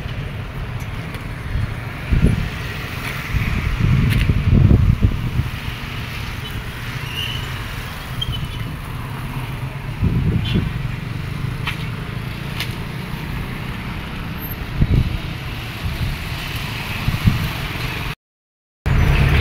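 Road traffic: cars and trucks passing on a busy road. Several louder swells of low rumble and wind buffeting the microphone come and go.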